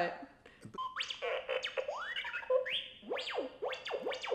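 Handheld R2-D2 toy playing droid chirps: a quick string of electronic whistles sliding up and down, mixed with short beeps.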